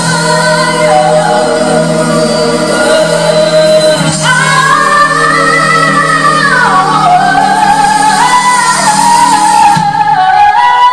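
Two women singing a pop ballad duet live with keyboard accompaniment: one holds long, wavering notes, then about four seconds in the other takes over on a higher line that slides down near the middle. A sustained keyboard chord runs underneath.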